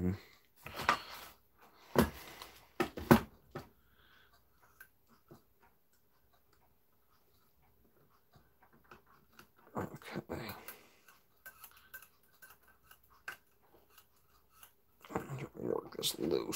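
Sparse small metallic clicks and taps of a screwdriver and loose brass parts against the plates of a Hermle 1161 clock movement as set screws are worked loose. They are a little busier about ten seconds in.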